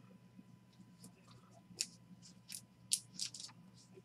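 Trading cards being handled and slid against one another by hand: a few faint, short clicks and scrapes, mostly in the second half.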